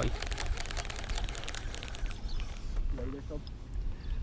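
Wind rumbling on the microphone, with fine rapid ticking from a baitcasting reel being wound in during the first couple of seconds. A faint voice comes in briefly about three seconds in.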